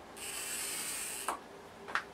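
Tailor's chalk drawn along the edge of a quilter's ruler across cotton fabric, marking a stitch line: a scratchy stroke about a second long. It ends in a sharp click, and a second click comes near the end.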